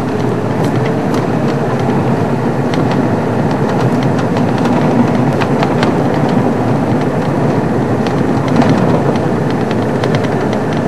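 Safari vehicle driving on a rough dirt track: steady engine and road noise, with frequent small rattles and knocks from the bumpy ride.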